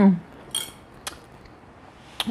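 A plastic fork clinking against a plate twice, once about half a second in and once a second in.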